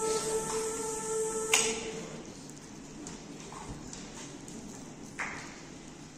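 A sustained chord from the choir-and-piano performance breaks off about a second and a half in with a sharp click. A quiet concert hall follows, with a few faint knocks.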